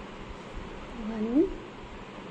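A single short vocal call, about half a second long and rising in pitch, a little past the middle, over faint background noise.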